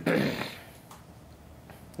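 A man coughs once at the start, a sudden burst that fades within about half a second, followed by quiet room tone.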